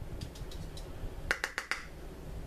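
A few faint ticks, then a quick cluster of four or five sharp plastic-like clicks about a second and a half in, from handling the loose setting-powder jar and powder brush.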